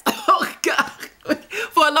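A woman laughing in several short, breathy, cough-like bursts, then going back to talking near the end.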